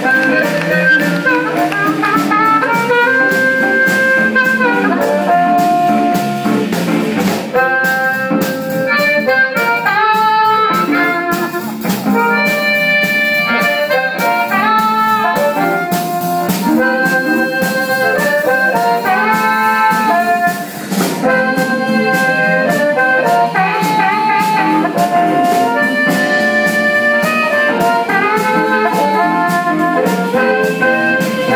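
Live blues band with amplified harmonica out front, playing long held and bending notes in phrases, over electric guitar and a drum kit.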